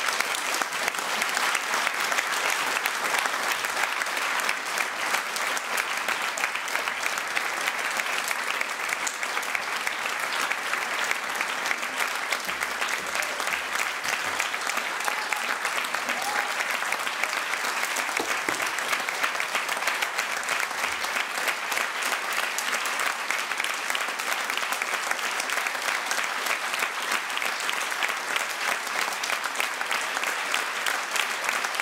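Audience applauding at a curtain call: a dense, steady clatter of many hands clapping.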